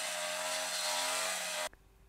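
Small engine of a brush cutter running steadily at a constant speed while cutting weeds, then cutting off suddenly near the end.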